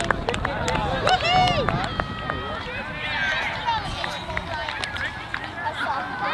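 Several voices of children and adults calling and shouting over one another across an open playing field, with scattered sharp clicks.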